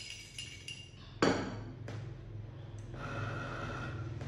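Ceramic xóc đĩa bowl and plate clinking lightly, then set down on a wooden table with one sharp knock about a second in.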